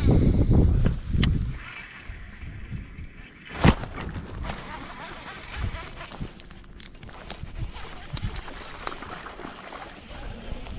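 Handling noise on a chest-worn camera: a loud low rubbing rumble of jacket sleeves moving over the microphone as the rod is worked, a single sharp knock about three and a half seconds in, then a light steady hiss of open-air noise.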